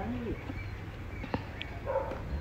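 Faint short animal calls near the start, followed by a few soft clicks and a brief rustle near the end.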